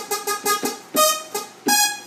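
Synthesizer keyboard playing a bright, plucky techno-style synth sound: a run of about eight short, quick notes.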